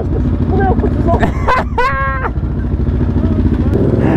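KTM Duke 690 single-cylinder engine with an Akrapovic exhaust idling with an even, rapid pulsing; near the end it gets louder as the bike moves off.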